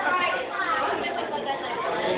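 Indistinct chatter of many people talking at once in a large, busy room.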